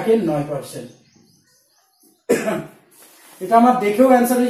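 A man's voice speaking, with a pause of about a second in the middle broken by a short vocal burst.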